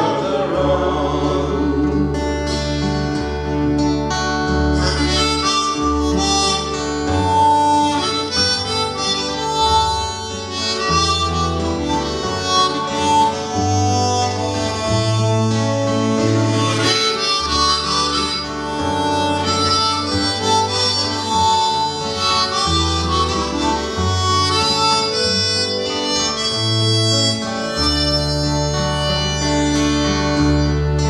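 Harmonica playing the melody of an instrumental break in a slow folk song, accompanied by two strummed acoustic guitars.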